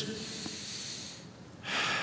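A man breathing audibly into a close microphone: a long soft breath out, then a stronger, quicker breath in near the end.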